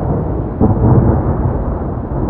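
Deep, steady rumbling noise, like rolling thunder, that swells louder about half a second in.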